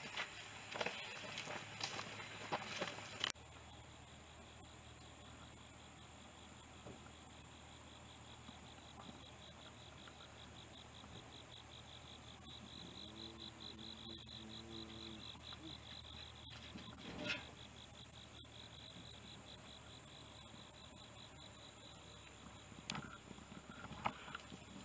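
Faint insect chirring outdoors: a high, fast-pulsing trill that is clearest in the middle. It is preceded by a few seconds of laughter and rustling that cut off abruptly.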